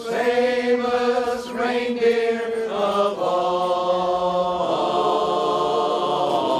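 Men's barbershop chorus singing a cappella in close harmony, holding long chords that shift several times.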